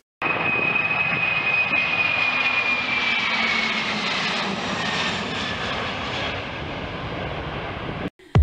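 Four-engine Boeing 747 cargo jet taking off at full thrust: a loud, steady jet roar with a high whine that slowly falls in pitch as the plane climbs past.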